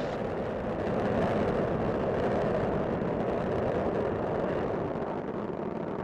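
Space Shuttle Discovery's solid rocket boosters and main engines firing during ascent: a steady, dense rumbling noise.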